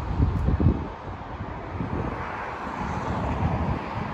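Wind buffeting the microphone in irregular gusts over a steady outdoor hiss.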